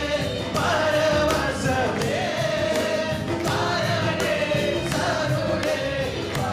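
A man singing a Tamil worship song into a microphone, backed by a live band with keyboard and drums keeping a steady beat.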